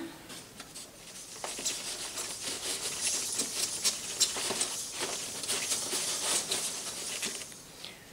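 A coin hip scarf being handled as the elastic tail is tucked into its fabric casing. The fabric rustles with many small irregular clicks from the scarf's metal coins, starting about a second and a half in and dying away near the end.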